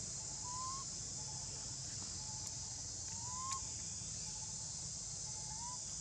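Steady high-pitched insect chorus, with three short rising whistle-like calls about two and a half seconds apart.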